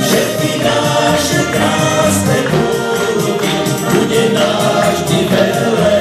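Live band music: electronic keyboards over a steady beat, with male voices singing.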